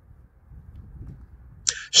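Mostly quiet: a faint, even, low background rumble with no clear source, then a man starts speaking right at the end.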